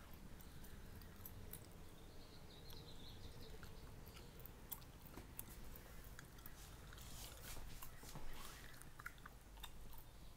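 Faint room tone with scattered small clicks and rustles from a handheld camera being moved.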